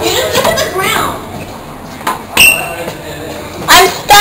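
Young people's voices calling out with no clear words, then a single sharp clink about two and a half seconds in, and a short loud cry near the end.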